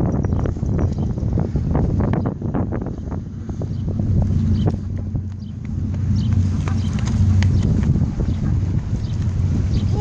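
Wind buffeting a phone's microphone, a steady low rumble, with a few scattered sharp taps such as footsteps on a concrete path.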